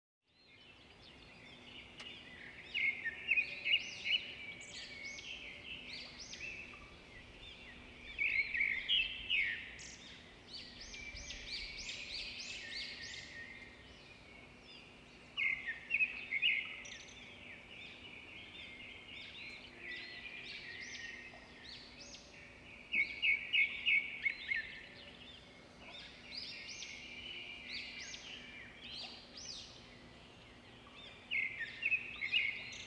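Birds chirping and twittering, with louder runs of quick, sharp notes every few seconds over a faint steady low hum.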